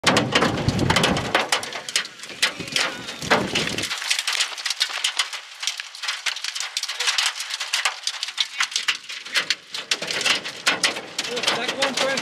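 Raindrops from a tornadic thunderstorm hitting a hard surface close to the microphone as a dense, irregular run of sharp taps, with a heavy low rumble, typical of wind on the microphone, in the first four seconds that then drops away.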